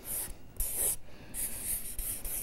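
Marker scratching across flip-chart paper as a word is written by hand, in four short strokes with brief pauses between them.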